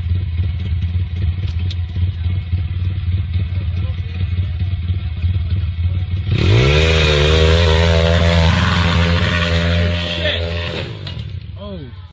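Small dirt bike engine idling steadily, then revved hard about six seconds in, with a quick rise in pitch held high and loud for about four seconds before it drops away. A person shouts "No!" at the very end.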